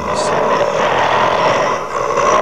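A long, rough roar sound effect for a Tyrannosaurus rex, loud and sustained.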